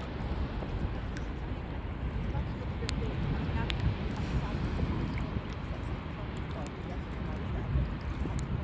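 Wind rumbling on the microphone, a steady low buffeting, with a couple of faint clicks a few seconds in.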